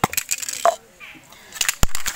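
An aerosol can of chain lube is shaken, and it rattles in quick sharp metallic clicks that start about one and a half seconds in. A few lighter handling clicks come before.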